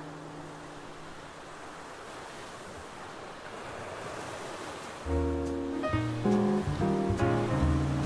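Ocean surf washing onto a sandy beach, with the last held notes of a jazz tune dying away in the first second. About five seconds in, a jazz band tune starts up with bass and horns, and it is much louder than the surf.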